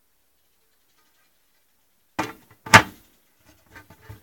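Silence for about two seconds, then handling noise and one loud clank as the metal lid is put onto a steam wax melter, followed by a few faint clicks.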